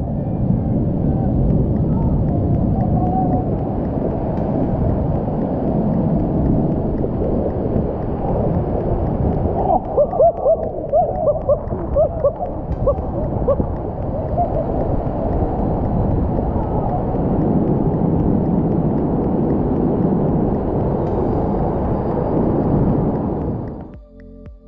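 Whitewater rapids rushing in a steady, loud roar. About ten seconds in, a few short calls or shouts rise over the water for a couple of seconds.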